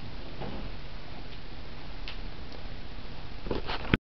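Steady room hiss with a few faint ticks, then a cluster of clicks and knocks near the end and a sharp click just as the sound cuts off: the camera being handled and switched off.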